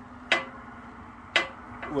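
Two sharp metallic clicks about a second apart, the second followed by a brief ringing tone, from metal parts touching at the sawmill's bandsaw blade and blade guide. A steady low hum runs underneath.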